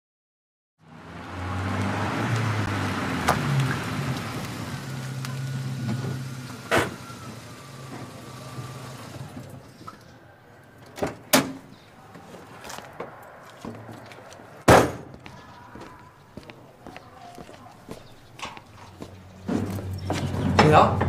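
A minivan's engine running for the first several seconds, then a series of sharp thuds of vehicle doors shutting, the loudest about fifteen seconds in, with lighter knocks between.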